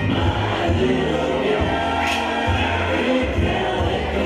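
Live band playing a song with sung vocals over a steady bass.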